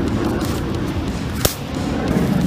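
A single sharp slap about one and a half seconds in, arm striking arm as a punch is blocked, over a steady low outdoor rumble.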